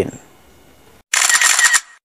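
A short, bright transition sound effect of about two-thirds of a second, about a second in, accompanying the cut to a title card; it is followed by dead digital silence.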